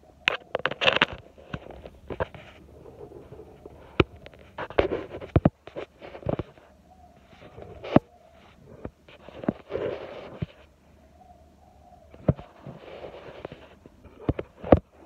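A 16 kg kettlebell being lifted in repeated reps, with the lifter's forceful breaths and sharp knocks and rustles from the bell and clothing coming in bursts about every three to four seconds.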